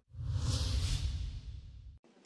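A whoosh transition sound effect marking the change to the next news item: a swell of hiss over a low rumble that rises quickly, peaks about half a second in, and fades away.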